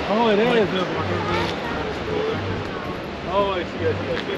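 Steady rushing of a river over rocks, with people's voices talking over it near the start and again near the end.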